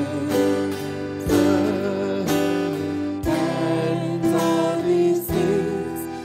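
Slow worship music: acoustic guitar chords struck about once a second under a wavering held melody line.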